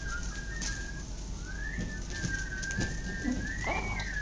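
A thin, high whistle holding one pitch, sliding upward about a second and a half in and again near the end, with a few soft knocks as a person climbs a stepladder.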